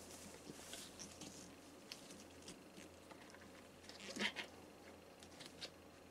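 Faint rubbing and small clicks of a rubber gas-mask facepiece and its head straps being pulled on and adjusted, with one louder rustle about four seconds in.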